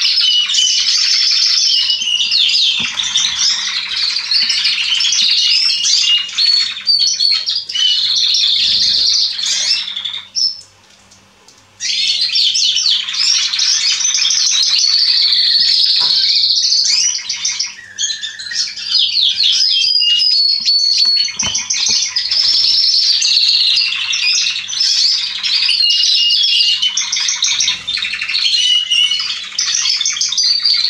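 Canary song: long, continuous runs of fast trills and rolling, warbled phrases. The song breaks off for about a second and a half about a third of the way in, then resumes.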